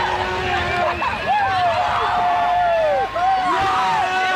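Excited voices cheering with long, drawn-out shouts that swell and bend in pitch, over a background of crowd noise.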